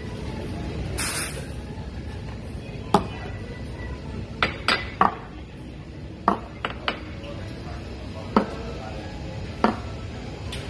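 Sharp clinks and knocks of cups and metal barista gear being handled at an espresso machine, about nine separate strikes spread over several seconds. A brief hiss about a second in.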